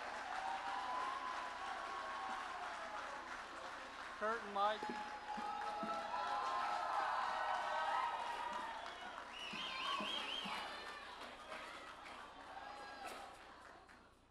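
Audience crowd noise: many voices cheering and calling out, with some clapping, a few short whoops about four seconds in and a wavering high call around ten seconds. It dies away near the end.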